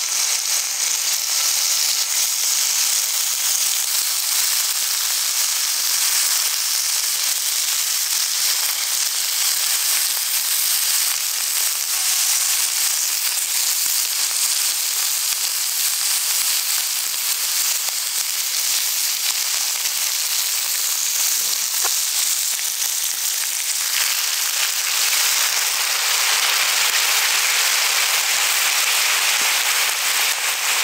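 Slices of meat sizzling in a hot iron frying pan over a campfire, a steady crackling hiss that grows fuller about three-quarters of the way through.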